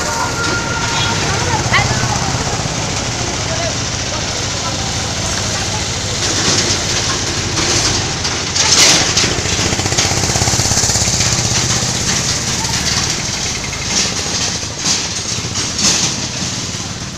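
A vehicle engine running steadily amid street noise, with a few brief louder bursts about halfway through and near the end.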